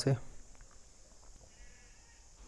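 A man's voice ending a word, then faint room tone with a steady hiss.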